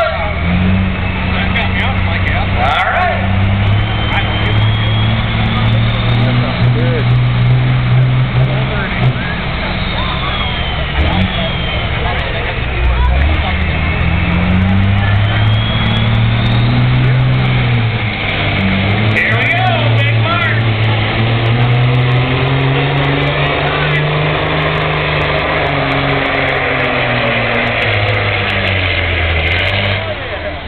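Cabover semi truck's diesel engine working hard under heavy load as it drags a weight-transfer sled in a truck pull, its pitch rising and falling as it goes, with voices in the crowd.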